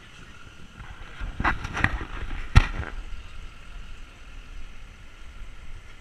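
Outdoor city ambience: a steady low rumble of traffic and wind. About a second and a half in, a few sharp clicks or knocks follow one another, the loudest one at about two and a half seconds.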